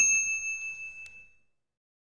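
A single high, bell-like notification ding sound effect that rings and fades away over about a second and a half.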